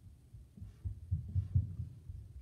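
Black felt-tip marker drawing quick short stripes on a sheet of paper on a wooden table, heard as a run of soft, irregular low thuds.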